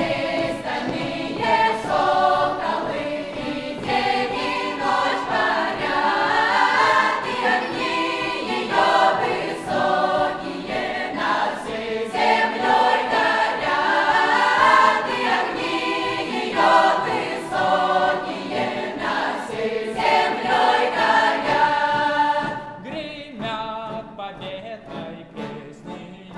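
Mixed youth choir singing a Russian folk song in full, open-throated folk style, with sharp beats keeping time under the voices. Near the end the singing drops away to a much quieter sound.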